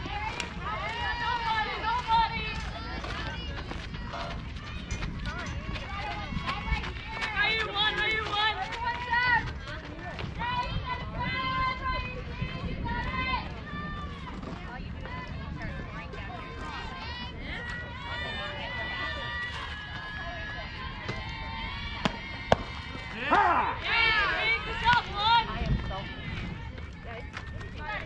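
Teenage softball players' voices calling and chanting across the field, too distant for words to be made out, over a steady low rumble. A single sharp crack sounds about 22 seconds in, followed by a burst of louder calls.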